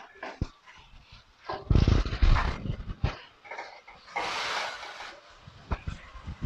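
A plastic spatula stirring chickpeas in thick tomato sauce in a metal pot, with scattered clicks and scrapes against the pot and a louder stretch about two seconds in. A dog's voice is also heard.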